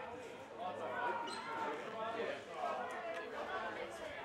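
Indistinct voices of players and spectators calling out and talking across an open football ground, with no clear words.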